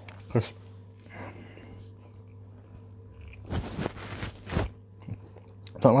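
Someone chewing a mouthful of soft frozen Vimto ice pop: a cluster of wet chewing noises lasting about a second, a little past halfway.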